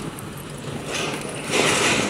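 Car driving along a street, heard from inside the cabin: a steady rumble of engine and road noise, with a louder rush of hiss near the end.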